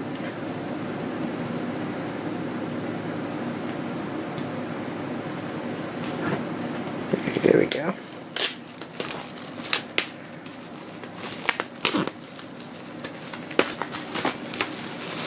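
Plastic shrink wrap on a vinyl LP sleeve crinkling and crackling as it is picked and torn open by hand, in a run of sharp crackles from a little past halfway. Before that, a steady rushing noise.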